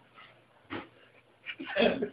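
A few short, breathy bursts of stifled laughter, quiet at first and building toward open laughing near the end.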